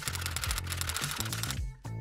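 Typewriter keystroke sound effect, a rapid run of clicks laid over background music. The clicking stops about three-quarters of the way through.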